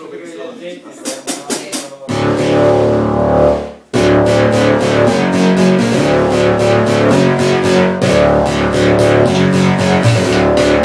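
A live synth-and-drums band starting a song: after a few clicks, a loud sustained chord with deep bass comes in about two seconds in and breaks off abruptly just before four seconds. The full groove then kicks in, with a steady fast hi-hat beat over bass and keyboard.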